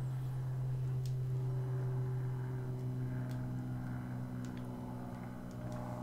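A steady low hum, with a few faint clicks about one and three seconds in.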